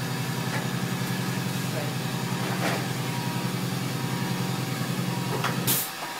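Steady low machine hum with a fine, even pulse. It cuts off suddenly near the end, right after a short loud hiss.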